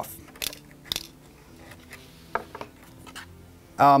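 A few light, spaced-out metallic clicks and clinks from a Phillips screwdriver and small screws being worked on a 2017 27-inch iMac's small trim piece.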